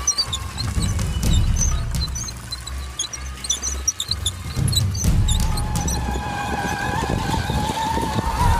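Background music over the running of small tracked military ground robots: a low, uneven rumble with short high squeaks from the tracks. About five seconds in, a steady whine comes in and rises slightly in pitch.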